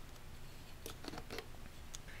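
A few faint handling clicks in the second half as a manual Contax Zeiss stills lens is taken off the camera rig's lens adapter and set down on a wooden table.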